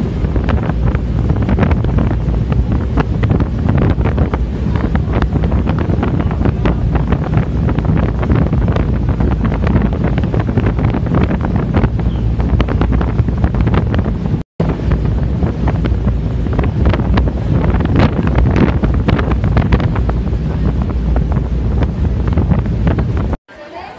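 Heavy wind buffeting the microphone on an open boat, a loud, steady rumble with constant crackling gusts. It cuts out for a split second about two-thirds of the way through.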